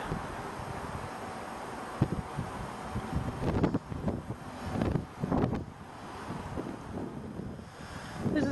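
Wind buffeting a camcorder microphone outdoors: a steady noise with a few brief louder bumps between about two and five and a half seconds in.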